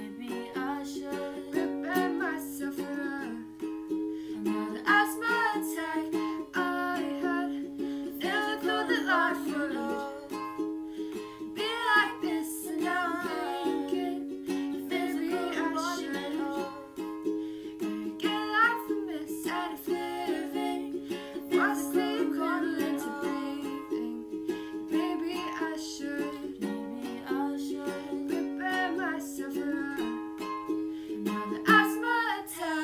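Ukulele strummed in steady chords with young female voices singing a song over it.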